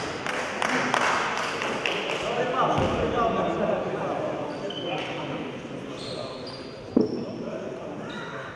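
Indistinct voices with scattered knocks and clatter, echoing in a large room; one sharp knock stands out about seven seconds in.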